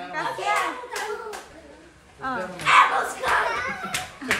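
People talking, a child among them, with a few sharp clicks about a second in.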